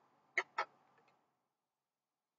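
Marker pen squeaking twice in quick succession as it writes on paper.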